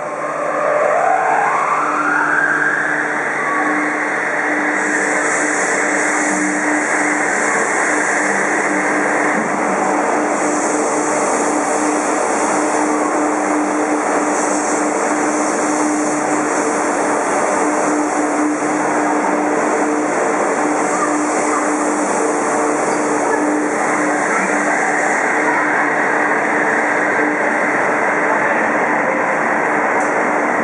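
Kobe Municipal Subway 5000-series linear-motor train pulling away from an underground platform. Its inverter whine rises in pitch over the first few seconds as it accelerates, then gives way to the loud, steady running noise of the cars passing and heading into the tunnel.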